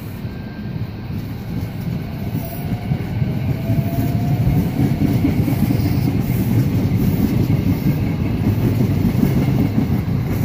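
SEPTA electric commuter train rolling past close by: a rumble that grows louder, with a faint rising whine about three seconds in.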